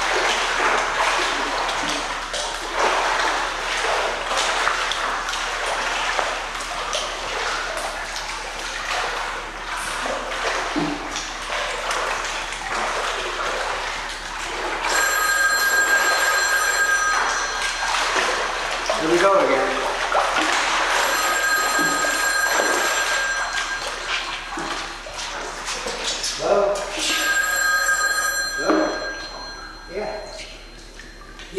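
Pool water splashing and sloshing as a man churns it with his arms. Three times in the second half, about six seconds apart, a telephone rings, each ring a steady electronic ringing of about two seconds.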